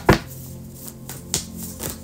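A deck of tarot cards being handled and shuffled in the hands: a few soft taps and flicks of card stock, one at the start and two more in the second half, over a faint steady musical drone.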